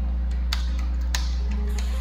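A few sharp computer-keyboard keystroke clicks over background music with a steady low drone.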